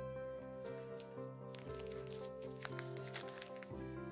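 Background music: a soft electronic song with held synth chords.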